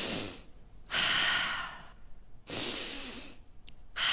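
A woman takes slow, deep breaths close into a handheld microphone as a guided breathing exercise. Each breath lasts about a second with a short pause between: one ends about half a second in, two full breaths follow, and another begins right at the end.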